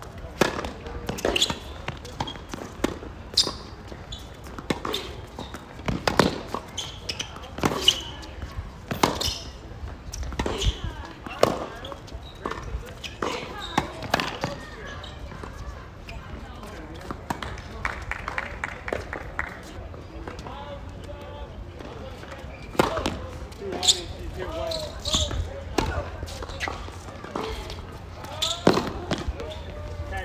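Tennis rally: sharp cracks of racket strings striking the ball and the ball bouncing on a hard court, coming every second or two. They stop for several seconds after the middle, then start again near the end.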